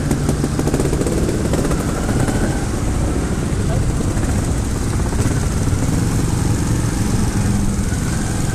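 Trials motorcycle engines running steadily at low revs as the bikes ride off at walking pace.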